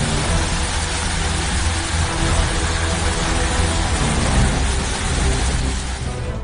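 Steady, loud rushing of a rain and hail storm with a low rumble underneath, over faint background music.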